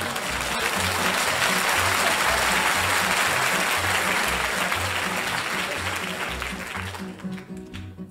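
Audience applause during a live song, swelling in the first seconds and dying away near the end, over a nylon-string guitar and double bass that keep playing the accompaniment with a steady bass line.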